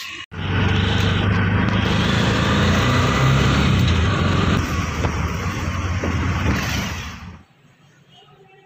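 Loud, steady road and wind noise from riding through city traffic, heaviest in the low rumble. It starts abruptly and cuts off suddenly about a second before the end.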